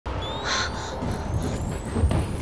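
Trailer sound effects: two short harsh squawk-like calls about half a second in, over a low rumble and a thin high whistle that rises slowly in pitch.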